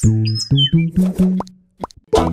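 Cheerful title-sequence music made of a run of short, separate notes, with high cartoon bird chirps near the start. It breaks off about a second and a half in and picks up again just after.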